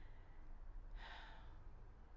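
A soft breath from the woman about a second in, over faint room tone with a low hum.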